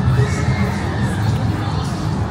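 Crowd noise with children shouting and one high held shout in the first second, over music with a heavy low bass line.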